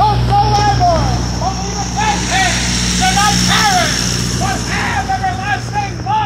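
A diesel semi-truck pulling a trailer passes close by, its engine drone steady, with a steady high whine above it. Over it a man's voice preaches loudly in short phrases, half drowned by the truck.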